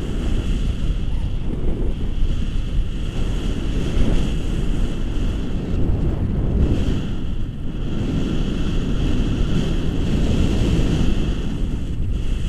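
Airflow of a paraglider in flight buffeting the camera's microphone: a loud, steady low rumble, with a faint steady high tone above it.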